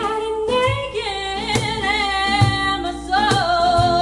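A woman sings long held notes that bend at their ends, over strummed acoustic guitar and low hand-drum beats from a cajon.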